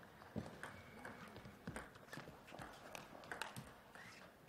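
Table tennis rally: the celluloid ball clicking off the rackets and bouncing on the table, a string of sharp clicks at uneven intervals about a quarter to half a second apart.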